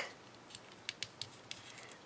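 Faint, scattered small clicks and crinkles of a folded paper lucky star being pinched and pressed between fingers, a handful of soft ticks a few tenths of a second apart.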